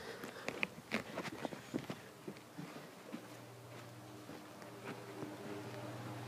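Faint handling noise from a phone being carried: a scatter of soft knocks and taps in the first two seconds. A low, steady hum comes in about three seconds in and stays.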